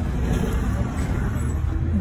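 Car cabin noise while driving: a steady low rumble of the engine and tyres on the road.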